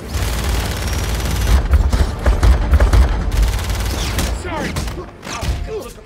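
Two pistols fired rapidly together as a film sound effect: a dense volley for about the first three seconds over a heavy low rumble, then dying away.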